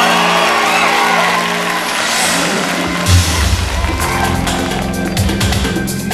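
A pop song's intro starting up over a studio audience cheering. About three seconds in a heavy low hit lands, and from about four seconds a steady beat with fast, regular hi-hat-like ticks takes over.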